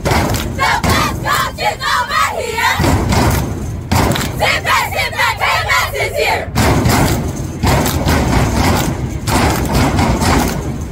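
A squad of girls shouting a cheer chant together in unison, in two shouted phrases. Sharp percussive hits keep the beat throughout.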